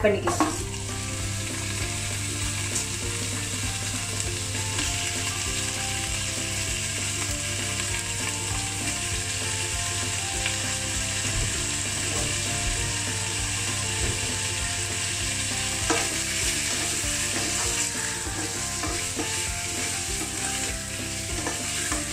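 Raw chicken pieces sizzling steadily in hot oil with browned onions in a non-stick frying pan, stirred now and then with a wooden spatula, with an occasional click of the spatula against the pan.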